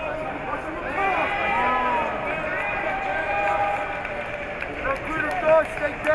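Several voices shouting at once over the hall's background noise, calling out over one another, with a few short, louder shouts near the end.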